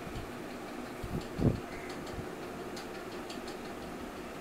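Quiet room tone: a steady faint hiss with a few faint ticks, and one short, soft low-pitched sound about a second and a half in.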